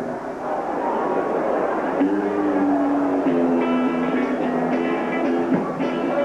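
A live rockabilly band starting a song, led by electric guitar; from about two seconds in, the guitar plays held, ringing notes.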